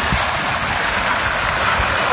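Fountain water splashing steadily into its basin.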